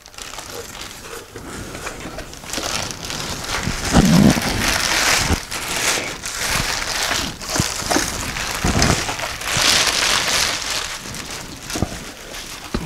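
Plastic packaging wrap crinkling and rustling in waves as it is handled and pulled off a boom stand inside a cardboard box, with a few light knocks.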